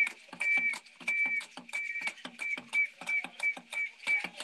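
Hand drums beaten in a fast, even rhythm for a traditional dance, with a high tone sounding in short repeated notes over the beat.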